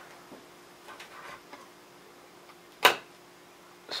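Quiet handling of a home-built camera panning rig's parts, with faint small rubs and taps, then one sharp click near the end as the shaft-mounted top plate and gear are set down onto the rig's frame.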